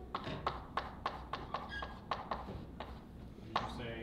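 Chalk writing on a chalkboard: a quick run of sharp taps and short scratches as the letters are drawn, about four a second, with a brief pause about three seconds in.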